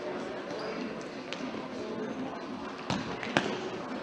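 Futsal ball being kicked and bouncing on a sports hall floor: a few short sharp thuds, the loudest about three and a half seconds in, over a babble of voices from players and spectators.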